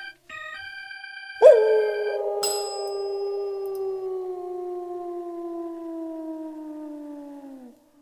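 A few notes of music, then, about one and a half seconds in, a long canine howl that slides slowly lower in pitch for about six seconds and stops just before the end. About a second after the howl begins, a desk call bell is struck once and rings on under it.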